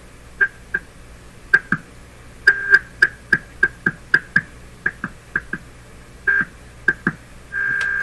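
A Hallicrafters S-38 tube receiver's speaker gives short, irregular blips of a signal generator's test tone, about twenty of them, as the receiver is tuned back and forth across the 20 MHz signal. Near the end the tone holds steady and louder, tuned in.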